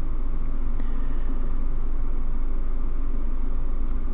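Steady low hum and rumble of background room noise, even in level throughout, with no other event.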